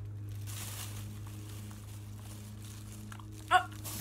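A plastic bag crinkling faintly about half a second in, over a steady low hum. A short vocal 'uh' comes near the end.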